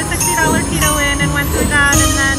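Rising Fortunes slot machine playing bright electronic chimes and rising melodic tones, several in quick succession, as a green bonus coin's value tallies up during the hold-and-spin bonus. Casino background din sits underneath.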